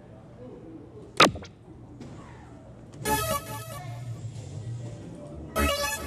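A soft-tip dart hitting an electronic dartboard, a sharp smack about a second in that is the loudest sound, with a lighter tick just after. The dartboard machine then plays its electronic hit sound effects: a bright, horn-like chime about halfway through and another short one near the end.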